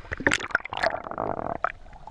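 Seawater sloshing and gurgling around a camera held at the waterline as it dips in and out of the sea, with irregular splashes and bubbly crackles.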